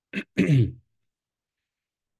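A man clearing his throat, heard over a video call: a short two-part "ahem" in the first second, with dead silence around it.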